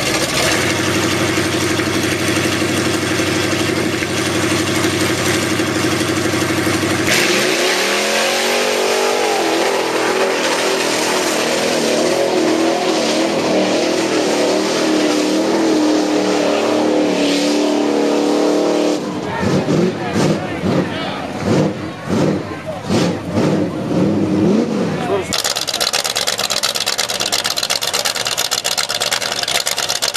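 Lifted Chevrolet Blazer mud-bog truck's engine idling, then revving hard and climbing in pitch as it drives through the mud pit. About two-thirds of the way in the revs rise and fall in choppy bursts. Near the end another lifted truck's engine idles steadily.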